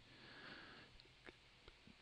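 Near silence: a faint in-breath through the nose in a pause between phrases, followed by a few faint ticks.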